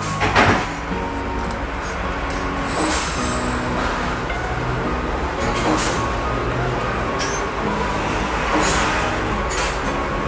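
Steady mechanical running noise with faint background music under it, and a few light clicks.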